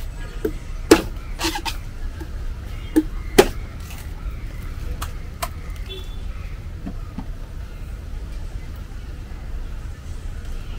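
A blade chopping open a young green coconut: about seven sharp strikes over the first five or six seconds, the loudest two about a second and three and a half seconds in, over a steady low background rumble.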